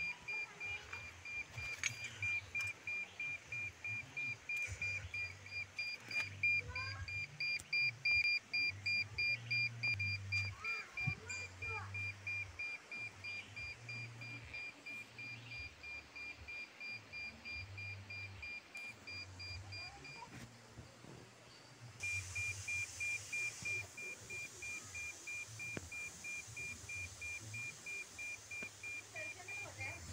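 Satellite signal meter beeping: rapid, evenly spaced high-pitched beeps that indicate the dish is picking up signal while it is aligned. The beeping breaks off for about a second and a half some twenty seconds in, then resumes.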